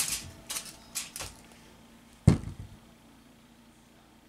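Light taps and clicks of clay and tools being handled on a craft tabletop, then one heavier thump a little over two seconds in, as of a lump of polymer clay set down on the cutting mat.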